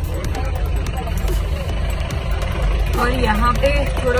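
Low, steady rumble of a car's engine and road noise heard inside the cabin as the car creeps along at low speed.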